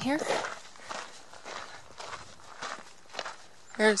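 A hiker's footsteps on a dirt trail, walking at about two steps a second.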